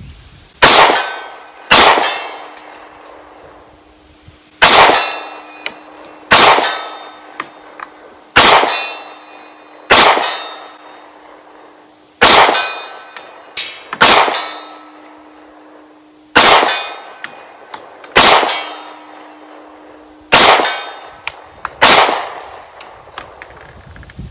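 Semi-automatic pistol fired slowly and deliberately, more than a dozen shots one to three seconds apart. Each loud crack is followed by a short ringing, echoing tail.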